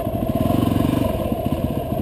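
Motorcycle engine running at low speed while the bike rolls slowly, a steady rapid pulsing of firing strokes heard from the rider's seat.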